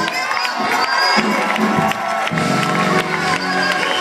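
Church congregation cheering and shouting over live gospel music from a choir and band. The low band notes drop away for the first couple of seconds and come back in about halfway through.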